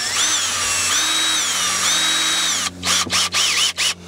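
A cordless drill's motor runs for about three seconds, its whine rising, holding and dropping three times as the trigger is squeezed and eased while the chuck is spun to take a bit. It stops suddenly, followed by a few short clicks as the bit is handled.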